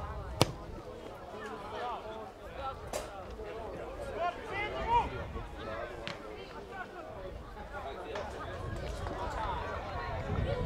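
A football is kicked with one sharp, loud thud about half a second in. Voices call across the pitch throughout, with a couple of fainter knocks of the ball a few seconds later.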